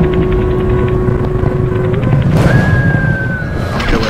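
Cinematic intro sound design: a deep rumble under a held low tone. About two seconds in, a swell of noise leads into a higher tone that slides slightly downward.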